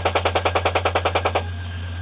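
A rapid burst of automatic gunfire from an aircraft's cannon, about fourteen shots a second, stopping about a second and a half in, heard through thin, radio-like gun-camera audio over a steady low hum.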